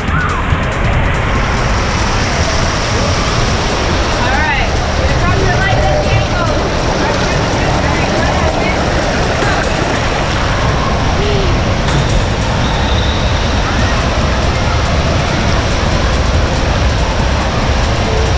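Steady, loud rush of splashing and running water on a wet action camera, with the echoing din of an indoor water park and a few brief children's shouts and squeals.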